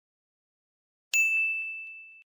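A single bell-like ding chime about a second in: one clear high tone that strikes suddenly and rings away over about a second. It is the cue chime that comes before each new vocabulary word.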